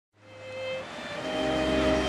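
Baroque string ensemble playing held violin notes, fading in from silence as the sound begins, over a low rumble.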